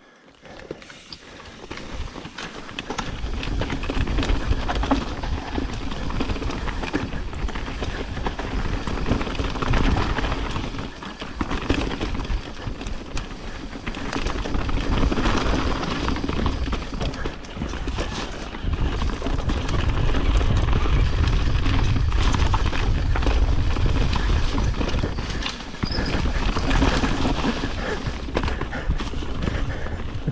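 Mountain bike riding down a rocky, leaf-strewn singletrack: tyres rolling and rattling over rock and dirt with the bike clattering, under a low rumble of wind on the microphone. It builds over the first few seconds and then surges and dips with the terrain.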